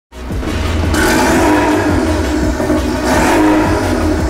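Intro music with a heavy low beat and held synth-like notes, starting abruptly and staying loud throughout.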